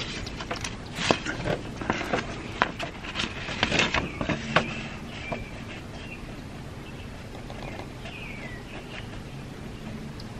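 Irregular small clicks and knocks of objects being handled on a tabletop for about the first five seconds. After that it is quieter, with faint bird chirps in the background.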